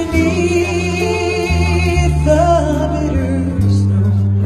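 Live band playing, with guitars and drums under a singer's voice holding wavering sung notes; the low bass notes change every second or so.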